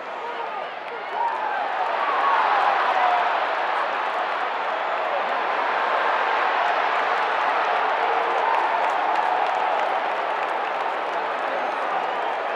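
Football stadium crowd noise: a dense wash of many voices that swells about a second in and then holds steady.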